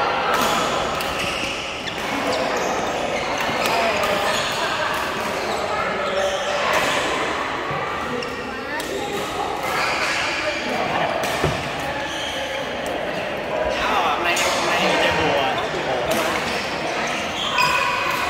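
Busy indoor badminton hall: people talking and calling across the courts, with repeated sharp racket strikes on shuttlecocks echoing in the large hall.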